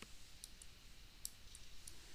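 Near silence with about five faint, light clicks scattered through it.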